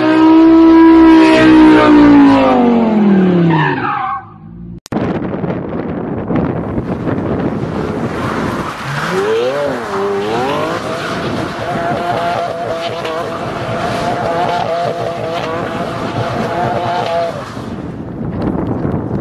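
A Lamborghini's engine at high revs, its pitch falling steadily over about four seconds as the throttle comes off. After a sudden cut, a Lamborghini Aventador doing donuts: the engine revs up and down once, then the tyres squeal steadily for about six seconds over the noise of the spinning car.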